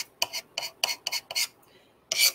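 A knife scraping and picking at wet spackle paste in a run of short, quick strokes, about six in two seconds.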